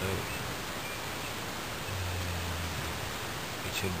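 Steady hiss of outdoor background noise, with a man's low closed-mouth hum ("mmm") in the middle.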